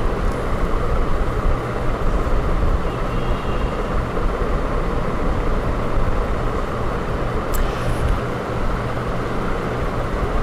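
Steady background noise with a low rumble, like traffic or a running fan, and a single light click about three-quarters of the way through.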